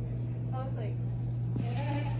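A steady low hum with a faint, wavering voice in the background; about one and a half seconds in, a rustling hiss comes in.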